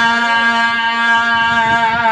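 A man's voice holding one long sung note, steady in pitch, in the chanted melodic recitation of a zakir at a majlis.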